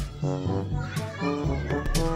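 Upbeat background music with a steady beat, with children's voices over it.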